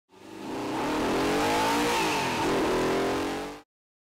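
A car engine revving hard as the car speeds along a road, its pitch rising and falling, over rushing road and wind noise. It fades in at the start and cuts off abruptly shortly before the end.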